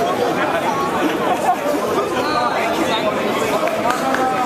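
Crowd babble: many people talking at once in a large, echoing hall, with no single voice standing out.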